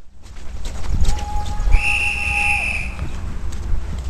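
A high, steady signal tone about a second long, with a lower steady tone under it that ends with a short dip. This is typical of the start signal of a paintball game. Low wind rumble on the microphone and a few sharp clicks run underneath.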